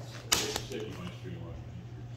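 A single sharp click about a third of a second in, over a steady low hum.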